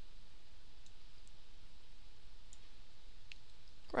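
A few faint, scattered computer-mouse clicks over a steady background hiss.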